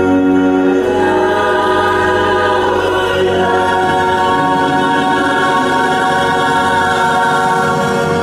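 A woman singing the long, held closing note of a musical-theatre ballad over a sustained chord of accompaniment.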